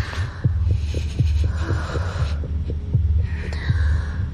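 Dramatic heartbeat sound effect: fast low thuds, about three or four a second, over a steady low hum, with breathy hisses about one and a half and three and a half seconds in.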